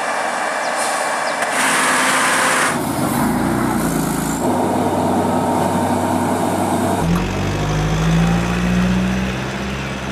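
Heavy diesel lorry engines labouring up a steep winding climb under load, heard in several short clips that change abruptly. In the last few seconds one engine holds a strong, steady low note.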